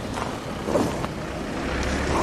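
Off-road 4x4 SUVs driving slowly past at close range, their engines running.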